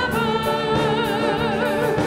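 Praise band leading a hymn: several women's voices singing held notes with vibrato over acoustic guitar, bass and drums, with the congregation joining in.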